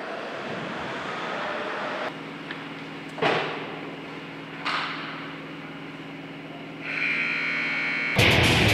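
Ice rink scoreboard buzzer sounding about seven seconds in, a steady electric tone marking the end of the period as the clock runs out. Before it, two loud, sudden thumps ring out in the arena over a low steady hum.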